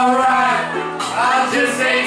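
A man singing karaoke into a microphone over a backing track, his voice gliding and breaking from note to note.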